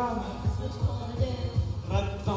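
Karaoke backing track with a steady thumping bass beat, about three beats a second. A male voice sings over it through the microphone at the start and again near the end.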